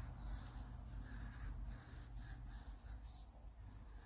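Faint pencil strokes on paper as curved lines are drawn.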